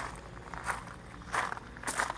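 Footsteps crunching on loose landscaping gravel, four steps about half a second to three-quarters of a second apart.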